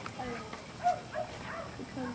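Children's voices in brief, broken-up fragments, with one short loud vocal sound about a second in.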